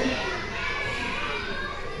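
Low murmur of young children's voices from a seated audience, with no clear words.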